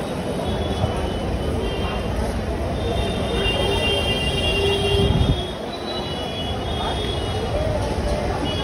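Busy street traffic and crowd noise: a steady rumble of vehicles and voices. A high squeal runs for a couple of seconds in the middle, and the rumble swells briefly about five seconds in.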